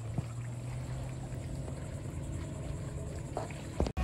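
Steady low hum of a boat engine running, over a wash of water noise.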